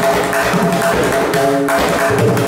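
A set of several tuned tabla drums struck rapidly with both hands in a dense, continuous pattern. The strokes carry ringing pitched drum tones over a deep, sustained bass tone.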